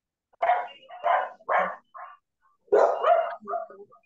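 A dog barking repeatedly in short, loud barks: three spaced about half a second apart, then a quicker cluster about three seconds in.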